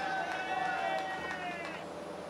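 A single long, high-pitched shout from a person, held for nearly two seconds and dropping slightly in pitch near the end.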